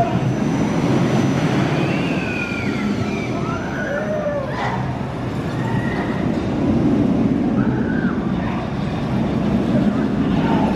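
Big Dipper steel roller coaster train running along its track: a steady rumble, with several high squeals gliding up and down over it between about two and eight seconds in.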